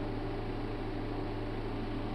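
Steady background hiss with a constant low hum underneath: the room and recording noise, with no other sound.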